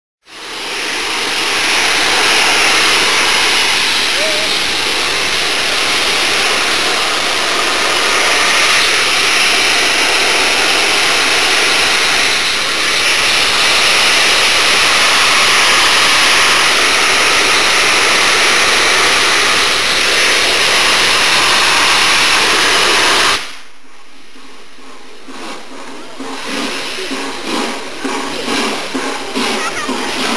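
Peppercorn A1 Pacific steam locomotive 60163 Tornado letting off steam: a loud, steady roar of escaping steam from a locomotive standing with a full head of steam. It stops abruptly about 23 seconds in, giving way to a much quieter mix of softer steam hiss and voices.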